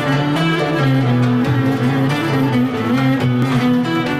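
Instrumental introduction to a Rumeli folk song in makam Uşşak: a Turkish ensemble of plucked and bowed strings playing the melody in steady, stepping notes.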